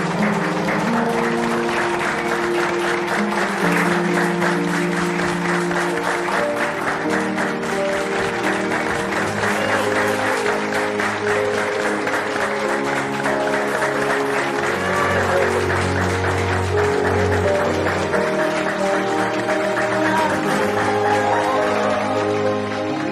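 A group of people applauding steadily, heard together with background music of sustained held notes.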